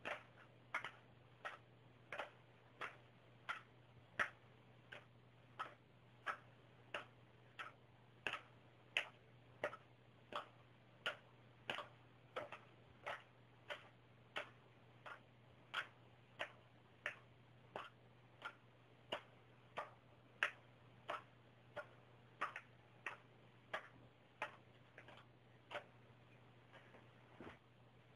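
Playing cards flicked one at a time across a room toward a plastic bowl, a short sharp click with each card, about three every two seconds and varying in loudness.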